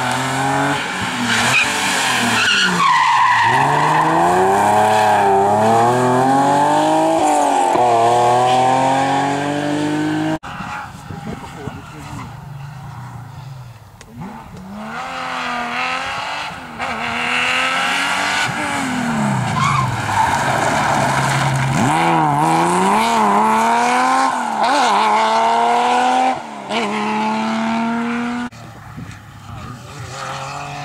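Rally cars driven hard past the spectator, one after another, engine notes rising and falling through the gear changes. First a BMW E30 3 Series is revved hard as it goes by. After an abrupt cut about ten seconds in, a Porsche 911's air-cooled flat-six comes closer and runs loud and high through several gear changes.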